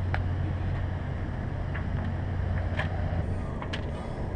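A steady low mechanical hum, like a running engine, with a few faint, brief clicks scattered through it.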